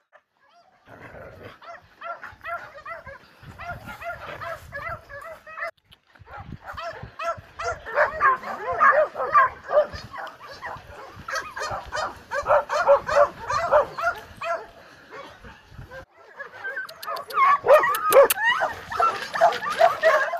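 Many dogs barking and yelping at once in an overlapping chorus, with whimpers among the barks. The chorus comes in three stretches broken by brief gaps, and a few sharp clicks sound near the end.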